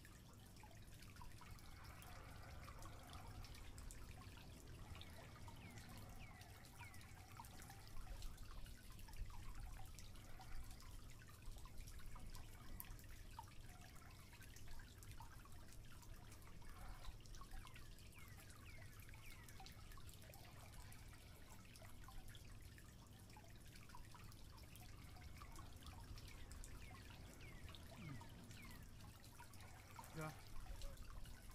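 Near silence: faint scattered ticks and clicks over a low steady hum.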